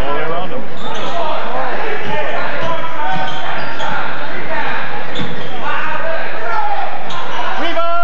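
A basketball being dribbled on a hardwood gym floor, under the steady, loud talking and shouting of a gymnasium crowd with many voices overlapping.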